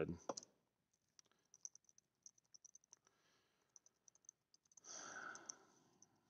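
Near silence, with faint scattered small clicks and a soft breath out about five seconds in.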